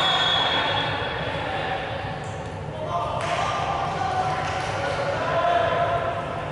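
Players' voices calling out in a large, echoing sports hall, with rubber dodgeballs bouncing on the wooden floor as they are set out.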